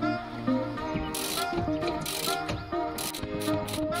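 Ratchet wrench clicking as a rear shock absorber's lower mounting bolt is turned: two longer runs of clicking about one and two seconds in, then short strokes about four a second near the end. Background music with a melody plays throughout.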